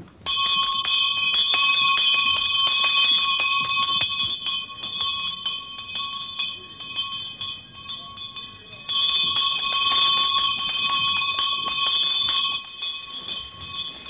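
Electric bell ringing with a rapid rattle of its clapper. It starts suddenly, is loud for about four seconds, weakens for several seconds, and comes back loud about nine seconds in before dying away near the end. It is a morning rising bell waking the sleepers.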